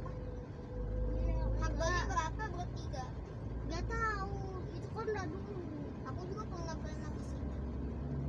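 Low rumble of a car's engine and tyres heard from inside the cabin while driving in traffic. It swells about a second in, under snatches of indistinct talking.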